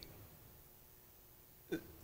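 Quiet room tone, broken once near the end by a brief voice sound from a man, a short catch in the throat before he goes on speaking.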